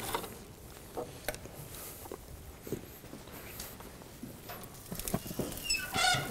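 Faint footsteps on a hard floor, then the lid of a stainless-steel gas grill being lifted open near the end, with a short squeak.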